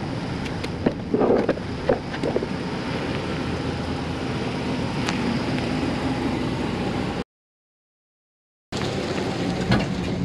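Dodge pickup's 4.7-litre V8 running as the truck rolls down off plastic drive-on ramps, a steady rumble with a few sharp clicks and knocks in the first couple of seconds. The sound cuts out for over a second near the end, then the rumble resumes.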